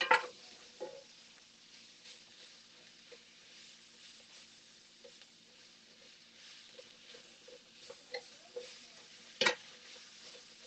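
Sliced bell peppers and onions sizzling faintly in a cast iron skillet while a slotted spatula stirs them, with small clicks and scrapes of the spatula against the pan and one louder scrape near the end.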